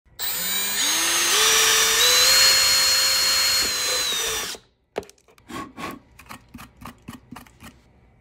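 Cordless drill running with a twist bit boring through the top of a plastic bottle. Its whine rises in steps as it speeds up and stops after about four and a half seconds. A sharp click follows, then a quick run of about a dozen short scraping strokes.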